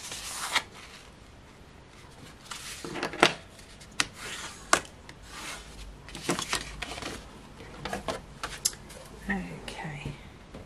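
Heavy 300 GSM cardstock being folded in half along a scored line and creased flat with a plastic bone folder: stiff paper rustling and rubbing, with several sharp taps and clicks against a plastic scoring board.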